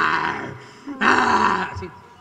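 A man's mock growl into a microphone, open-mouthed like a biting animal: two raspy growls, the first fading out about half a second in, the second starting about a second in and dying away before the end.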